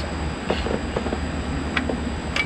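Plastic Watermelon Smash toy clicking a few times as it is pressed down onto a head for one crack, over a steady low rumble.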